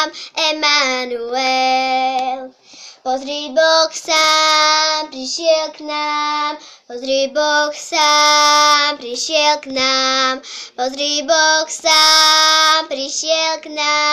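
A young girl singing a Slovak Christian song alone with no accompaniment, in phrases with several long held notes and short breaths between them.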